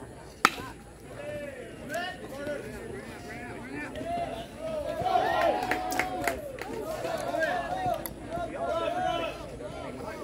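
A baseball bat hitting a pitched ball about half a second in: one sharp crack, the loudest sound here. Then several spectators shout and cheer as the play runs on, louder from about four seconds in.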